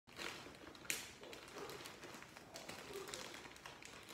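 Plastic mailer bag rustling and crinkling as it is handled and pulled open, with a sharp snap about a second in.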